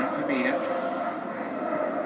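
Football match broadcast playing on a television in the room: a steady wash of stadium crowd noise, with a short spoken word about half a second in.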